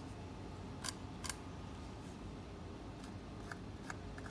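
Light clicks and scrapes of a pointed marking tool working along the edge of an MDF guitar-body template, with two sharper ticks about a second in and a few fainter ones near the end, over a steady low hum.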